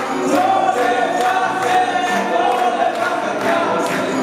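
Several male singers performing live with an orchestra, holding one long sung note over a steady beat.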